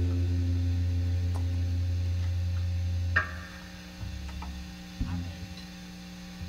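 A low amplified note from an electric string instrument rings out after the music, then is cut off suddenly about three seconds in. After that comes a steady amplifier hum with a few faint clicks.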